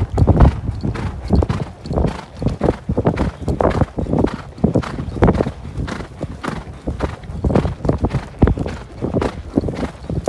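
A ridden horse's hoofbeats in deep, heavy sand: a steady run of dull hoof strikes several times a second.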